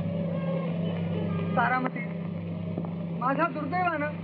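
Steady low hum and hiss of an old film soundtrack, with short bits of a voice about one and a half seconds in and again near the end.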